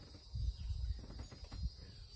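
Steady high-pitched chorus of insects, with a few short low rumbles about half a second and a second and a half in.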